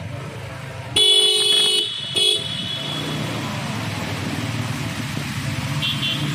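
A vehicle horn sounds twice: a long honk about a second in, then a short toot, ringing on briefly in a concrete underpass. A motorcycle engine runs steadily underneath.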